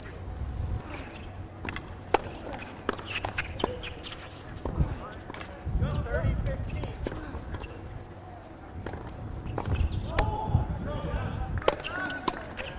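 Tennis balls bouncing and being struck on hard courts: scattered, irregular sharp pops, with faint voices of players talking between points.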